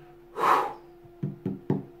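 A man's short, breathy exhale about half a second in, then three quick light knocks about a quarter second apart.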